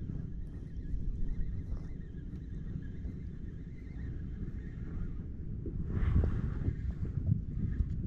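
Spinning reel being cranked steadily close to the microphone as a light hooked fish is reeled in, over a low rumble of handling and wind noise.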